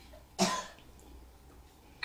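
A person coughing once, short, in a pause between speech.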